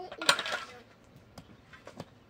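A metal shovel scraping into stony earth once, loud and short, about a third of a second in, then a few faint clicks of stone.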